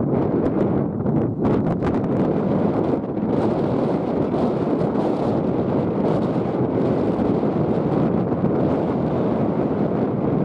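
Wind buffeting the microphone: a steady low rumbling noise, with a few brief crackles between one and two seconds in.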